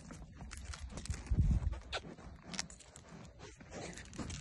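Goats moving about close by on dry, stony dirt: scattered hoof clicks and scuffs. A louder low thump about a second and a half in.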